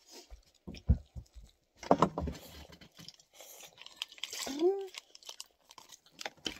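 Tabletop handling noises: a few light knocks, then a louder clatter about two seconds in and rustling of a paper or plastic wrapper being handled. A brief voiced hum near the end.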